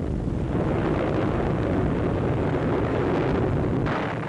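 Anti-aircraft flak explosions mixed with heavy bomber engines on an old newsreel soundtrack. It is a continuous, dense, deep rumbling noise in which the blasts run together rather than standing out one by one.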